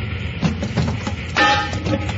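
Radio-drama sound effects of a steam locomotive's cab: a steady low rumble of the running train, a few knocks, then a sudden loud ringing hit about a second and a half in, as the firebox is stoked.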